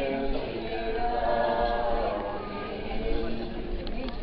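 A group of people singing a religious hymn together without accompaniment, in long held notes.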